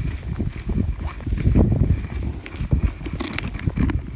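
Footsteps crunching through deep snow, with the scrape of a sled being dragged over it, as a series of irregular thuds and crunches.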